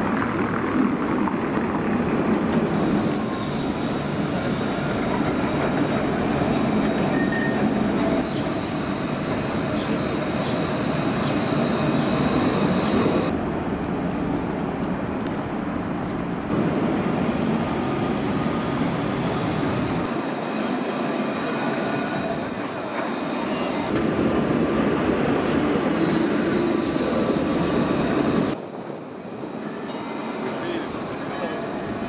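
Alstom Citadis 402 low-floor tram running past on street track: steady rumble of wheels on the rails with a faint high whine above it.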